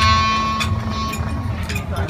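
Clarinet playing softly outdoors, a high note fading out past midway over a steady lower tone, with low wind rumble on the microphone.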